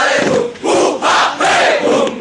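A large group of men shouting a chant in unison, loud rhythmic shouts with short breaks about every half second.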